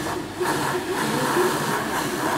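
Electric shoe polisher running, its motor-driven brush roller spinning against a canvas shoe.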